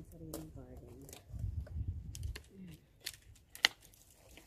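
Long-handled loppers snipping through dry branches: a sharp cut near the start and two more close together near the end, the last the loudest, with a low rumble about halfway through.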